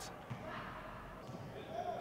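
Faint basketball game sound: a ball bouncing on a hardwood gym floor amid the general noise of the game.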